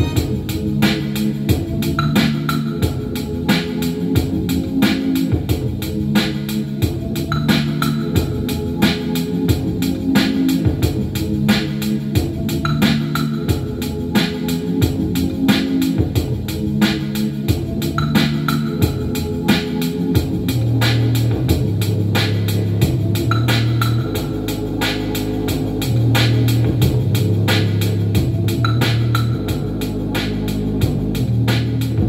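Electronic keyboard played by hand: sustained chords over a steady drum beat, with a bass line that comes in more strongly about two-thirds of the way through.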